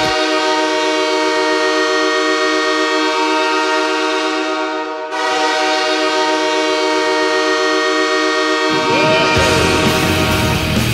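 Detroit Lions stadium touchdown horn sounding two long blasts, a chord of several steady tones, the first about five seconds long and the second about four, followed near the end by the start of the goal song.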